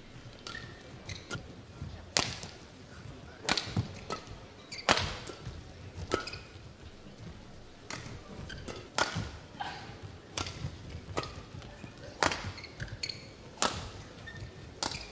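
Badminton rally: sharp cracks of rackets hitting the shuttlecock about once a second, some much louder than others. Between the hits come short squeaks of players' shoes on the court mat.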